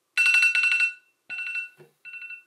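Electronic alarm beeping: a fast run of about ten beeps a second on two steady pitches, in two bursts, the second shorter and quieter than the first.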